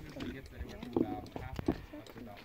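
Slabs of shale knocking and clinking together as they are handled, with two sharp knocks about a second in and near the end, under indistinct talk.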